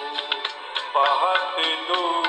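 A Hindi film song: a male voice comes in singing about a second in, over sustained instrumental accompaniment and a quick, regular percussion beat.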